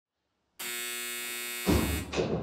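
A security door's electric lock buzzer sounds about half a second in, a steady buzz for about a second, then a loud clunk near the end as the released door is pushed open.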